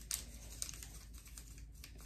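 Faint, scattered clicks and rustles of artificial leaf sprigs being pushed into the dry twigs of a grapevine wreath.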